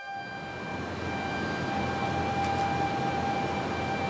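The end of an intro logo sting: a few high synthesized tones hold steady over a wash of noise that grows slightly louder.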